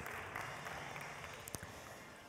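Faint audience applause dying away, with a light click about one and a half seconds in.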